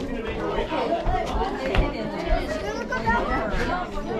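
Chatter of several people talking at once, voices overlapping with no one voice standing out.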